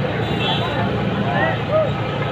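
A crowd of men talking at once: many overlapping voices with no single clear speaker, over a steady low rumble.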